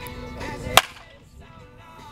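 Music with held tones, cut by a single loud, sharp crack a little under a second in.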